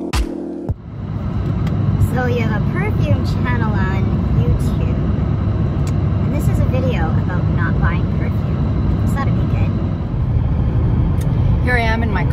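Electronic intro music cuts off under a second in, giving way to the steady low rumble of road and engine noise inside a moving car's cabin, with a woman's voice talking faintly over it.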